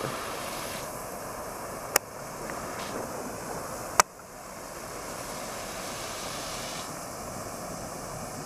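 Homemade potassium nitrate and sugar smoke bomb burning with a steady rushing hiss as it pours out smoke. Two sharp clicks cut through it, about two and four seconds in.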